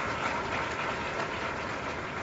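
Large audience applauding, the clapping slowly dying down.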